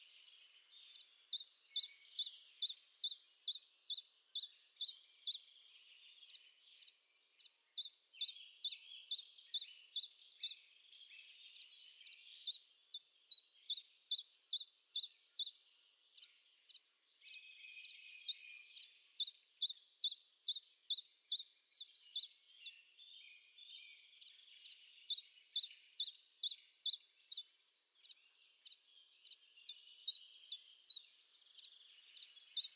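A small songbird singing: sharp high notes repeated two or three times a second in long runs, broken by short pauses, over faint twittering from other birds.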